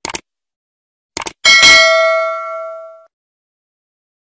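Subscribe-button sound effect: a pair of short mouse clicks, another quick pair of clicks about a second later, then a single notification-bell ding that rings out and fades over about a second and a half.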